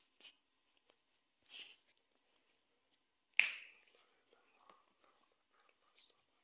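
Faint whispering and breathy sounds from a man close to the microphone, with one sharper breathy puff a little past the middle.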